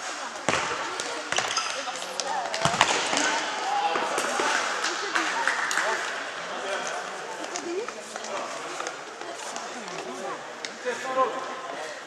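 Spectators' voices and shouts in a sports hall, with a few sharp thuds of the futsal ball being kicked in the first three seconds.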